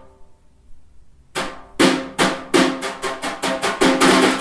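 Snare drum struck with single hits that come faster and faster from about a second and a half in, running into a roll near the end.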